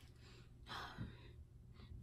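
A person's faint breath: a soft intake of air a little under a second in, with near silence around it.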